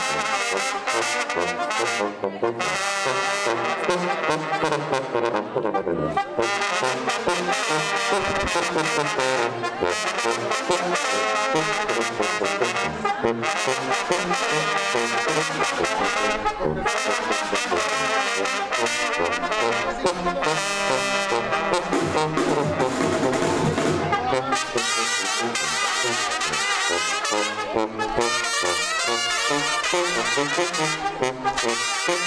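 Brass band with a tuba playing a lively tune without pause.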